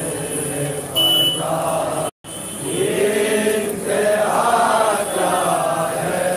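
Men chanting a noha, an Urdu Shia lament for Imam Husain, in a slow, drawn-out melody. The sound drops out completely for a split second about two seconds in.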